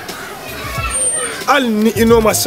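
Speech: a man talking, the voice growing louder in the second half.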